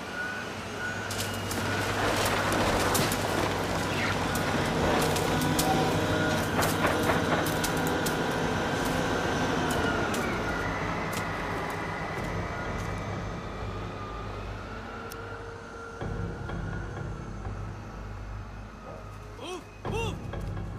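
Diesel engine of a Hyundai excavator running steadily, with many metallic clanks and knocks over the first half, when it is loudest.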